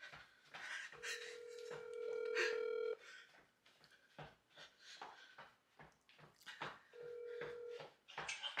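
Telephone ringback tone from a smartphone on speakerphone: the call is ringing at the other end. It is a steady two-second burr, then a four-second pause, then a second burr that stops after under a second.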